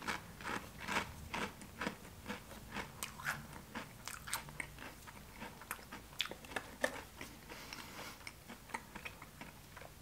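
A mouth chewing a Pringles potato crisp: a run of faint, irregular crunches, a few a second.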